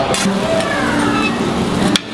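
Restaurant hubbub of voices over a steady low hum, with a metal spatula clinking sharply against plate and griddle twice, just after the start and again at the end.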